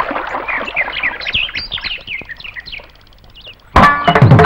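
Birds chirping: a quick run of short whistled calls over a background rush that fades away. Near the end the song's music comes in suddenly and loudly with drums.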